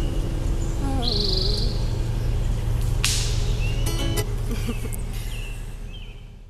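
Acoustic guitar's final chord ringing out and dying away at the end of a song, with birds chirping. A sharp click about three seconds in, and the sound fades out near the end.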